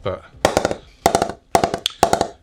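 Wooden bat mallet tapping the face of a Gray-Nicolls Alpha Gen 1.0 English-willow cricket bat: a quick run of about a dozen light knocks starting about half a second in, each with a short ringing tone. The tap-up sounds a bit hollowy, which the reviewer puts down to the concaving of the blade.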